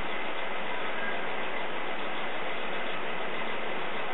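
Steady, even background hiss with nothing else happening.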